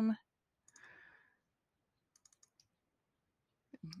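A few faint computer mouse clicks a little past the middle, with a soft faint rustle about a second in; otherwise near quiet room tone.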